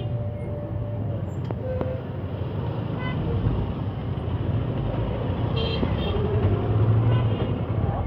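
Busy street traffic: a steady rumble of vehicle engines and motorcycles, with a few short horn toots in the second half.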